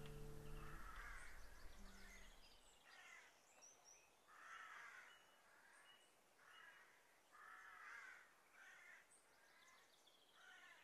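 An acoustic guitar chord dies away within the first second. Then come faint bird calls, short rough caws scattered irregularly about every second, over near silence.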